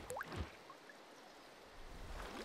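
Faint watery sound effects: a drip-like plop and a short rising bloop within the first half second.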